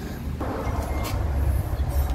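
A vehicle engine running with a low, steady rumble, with a few faint clicks over it.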